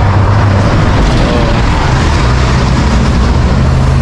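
Street traffic with a large vehicle's engine running close by: a low, steady drone whose pitch shifts about a second in.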